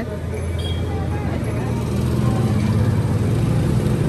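A motor vehicle's engine running nearby with a steady low hum, growing slightly louder, over general street traffic noise.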